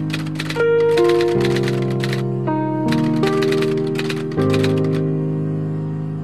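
Music: sustained chords that change every second or so, with bursts of rapid clicking laid over them.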